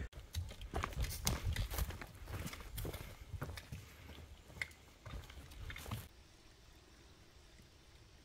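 Footsteps of hikers on a dry, leaf-littered forest trail: irregular soft crunches and taps that stop about six seconds in, leaving near silence.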